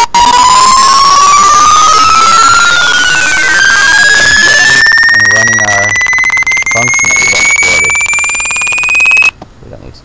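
Computer beep tones from the Windows kernel32 Beep function, played as a rapid run of short beeps each 10 Hz higher than the last. Together they sound like one steadily rising tone, climbing from about 1 kHz to about 2.5 kHz, and it cuts off suddenly about nine seconds in when the program is stopped.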